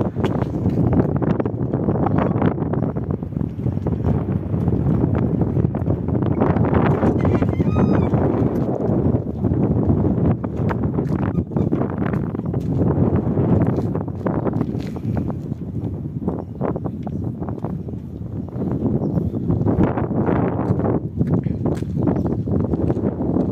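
Wind buffeting a phone's microphone in uneven gusts, with scattered small knocks.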